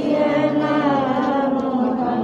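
Slow devotional chanting of a sung religious refrain, with long held notes.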